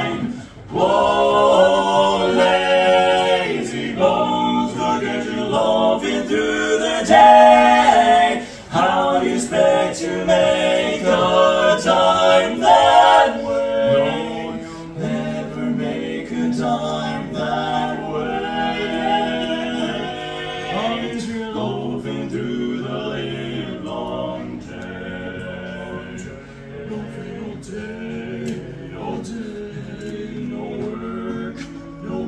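Male barbershop quartet singing a cappella in close four-part harmony. Full and loud through the first half, softer from about halfway on.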